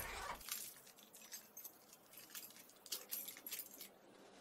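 Faint clicks and rattles of a house's front door being opened and people going out through it, with light scuffs and rustling.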